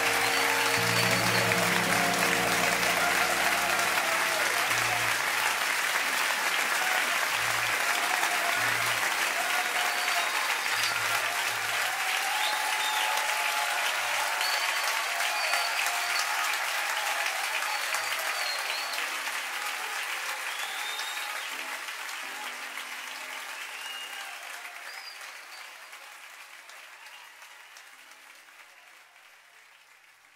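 Live audience applauding and cheering with a few whistles as a church choir's song ends, the last low instrumental notes dying away in the first several seconds; the applause fades out gradually over the second half.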